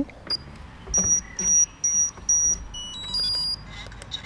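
FPV quadcopter powering up: a click as power is connected, then four short, evenly spaced high-pitched beeps, followed by a quick run of shorter beeps at changing pitches, the startup tones as its electronics come on.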